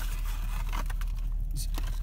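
Paper takeout bag and cardboard carton rustling and scraping in short, scattered bits as food is pulled out of the bag, over a steady low hum inside a car.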